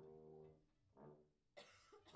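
Faint brass instrument notes, one held for about half a second and a shorter one about a second in, then a short cough near the end.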